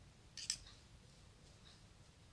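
Knitting needles clicking together once, a short, sharp click about half a second in, while a row is worked; otherwise only faint handling.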